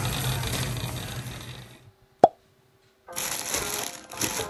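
Steady store background noise fading out into near silence, broken about two seconds in by one sharp, loud pop. Near the end comes a rustle of plastic bags as bagged carrots are handled on a kitchen counter.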